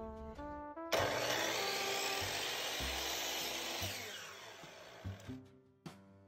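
An electric compound miter saw starts suddenly about a second in and runs for about three seconds, cutting a thin wooden dowel to length. Its sound then dies away over the next second as the blade spins down.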